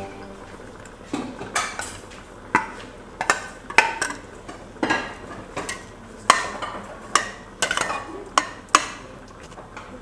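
Metal spoon clinking and scraping against a stainless steel cooking pot as soup is stirred, in irregular sharp clinks about two a second.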